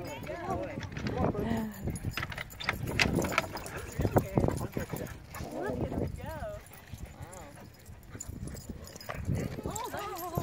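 Footfalls on packed dirt, from people walking and dogs running, with indistinct voices and short wavering vocal sounds at times.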